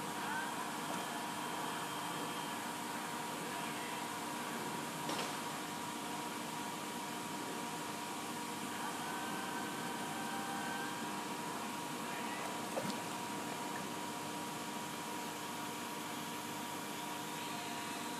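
A steady mechanical hum with a constant high whine running through it, and a couple of faint clicks.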